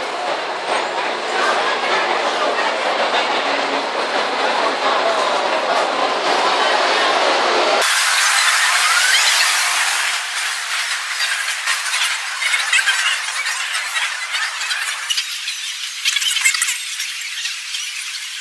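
Busy city street traffic with buses stopping and passing, and a high squeal over it, such as bus brakes. The sound changes abruptly twice, at about 8 and 15 seconds in, where the recording cuts.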